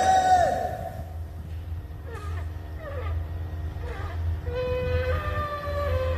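A crowd of men shouting "Amen!" together, then chanting and singing in unison with long held notes from about four and a half seconds in, over a steady low rumble.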